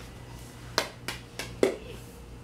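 Plastic stacking ring knocking and bouncing on a hardwood floor: four quick knocks in under a second, the last with a short ring.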